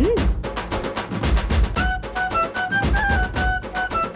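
Background music score with low drum beats, joined about halfway through by a high melody of held notes.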